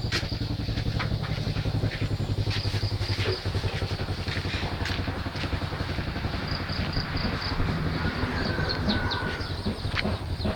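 An engine running steadily with a low, even throb that does not rev up or down.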